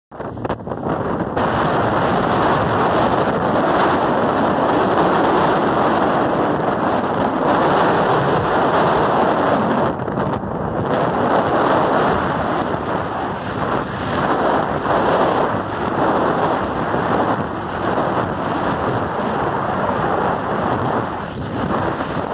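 Motorboat under way, heard mostly as loud, steady wind buffeting the microphone, mixed with water rushing along the hull.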